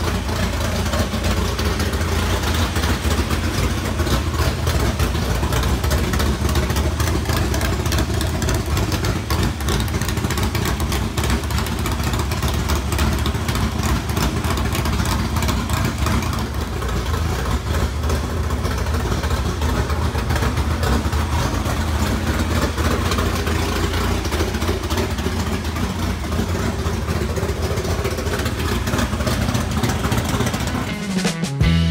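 A loud engine running steadily at an even speed, with no rise or fall in pitch.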